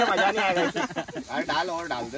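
Men's voices talking over one another, with a hiss of chopped onions and chillies frying in a steel pan over a wood fire underneath.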